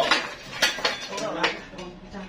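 Sharp metal clinks and knocks, four or so in two seconds, from the chain rigging and steel sawmill frame as a huge log hanging in chains is shifted into place. Men's voices call out briefly between the knocks.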